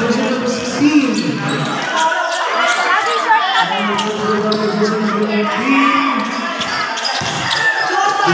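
A basketball being dribbled on a hard court, with repeated short bounces, under spectators' and players' voices calling out.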